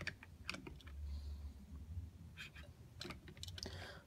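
Faint scattered clicks and taps from handling, a few at a time, over a low rumble.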